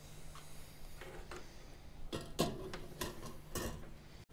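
A handful of small metallic clicks and taps from alligator clips and soldering tools being handled at a helping-hands stand, the loudest a little past halfway.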